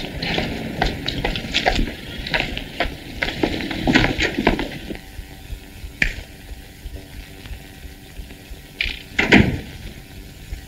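Footsteps on pavement, about two to three a second, over the hiss of an old film soundtrack. After about five seconds the steps stop and a faint steady hum remains, with a louder thud near the end.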